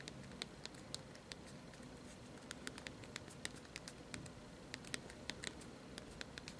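Faint, uneven run of small clicks from thumbs pressing the keys of the LG Xenon's slide-out QWERTY keyboard while typing a text message.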